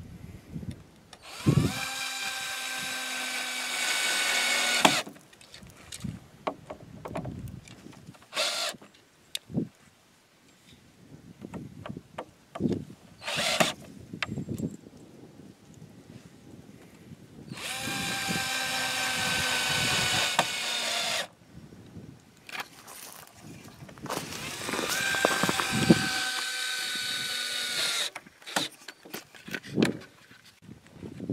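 Cordless drill running in three long runs of about three to four seconds each, driving into a wooden rafter joint, with a few short blips of the trigger between; the whine sags in pitch near the end of the last run as the load comes on.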